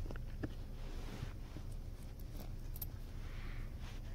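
Faint handling of copper cents on a cloth: a few light clicks and rubs as the coins are picked up and moved by fingers, over a low steady hum.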